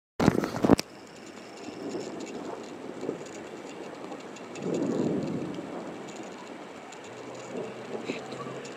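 Outdoor storm ambience: a short, loud crackling burst just after the start, then a steady hiss with a low rumble that swells about five seconds in, the rumble of distant thunder.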